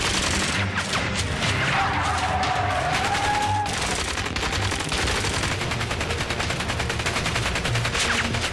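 Sustained automatic gunfire: many shots in rapid succession, densest in the second half. A wavering high tone rises over the shots about two seconds in and fades out a second and a half later.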